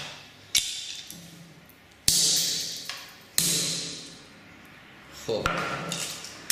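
Three sledgehammer blows on Koss Porta Pro headphones lying on a concrete floor: a sharp knock about half a second in, then two louder strikes about two and three and a half seconds in, each ringing away briefly. The headphones are proving hard to break.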